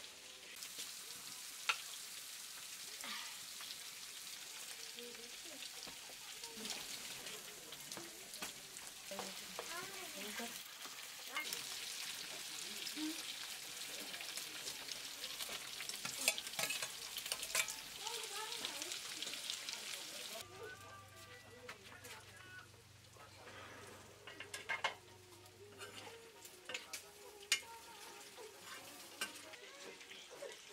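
Pieces of pork frying and sizzling in a black wok, with spatula scrapes and metal clinks, including a steel lid. About two-thirds of the way through, the sizzle drops away suddenly, leaving quieter clinks over a low hum.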